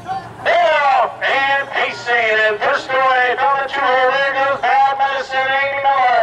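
A man's voice calling a harness race in a fast, drawn-out, sing-song delivery, with long held notes on some words.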